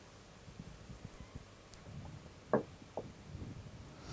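Quiet room with faint soft low noises and two brief throat sounds, about two and a half and three seconds into a long held draw on an e-cigarette.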